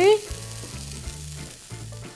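Hot fried vegetables sizzling faintly as they are tipped from a frying pan onto a plate, under soft background music with a slow bass line.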